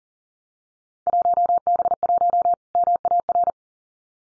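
Morse code at 40 words per minute: a single steady tone of about 700 Hz keyed on and off in quick dots and dashes, starting about a second in and stopping about a second and a half later. It is the first sending of the next Field Day exchange, "1B1 Maritime".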